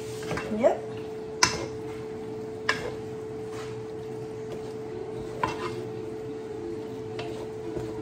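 Wooden spoon stirring a thick, creamy pasta in a metal skillet, knocking sharply against the pan a few times, about half a second, one and a half, nearly three and five and a half seconds in, with lighter scrapes and taps between. A steady hum runs underneath.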